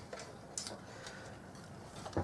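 A few faint clicks over low room noise.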